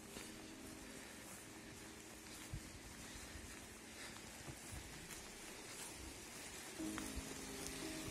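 Faint, even trickle of a small stream of water running over a muddy forest trail, with a soft footstep thud about two and a half seconds in.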